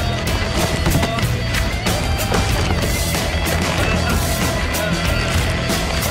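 Action film score with a steady low pulse and many sharp percussive hits, mixed over the sounds of a close hand-to-hand struggle.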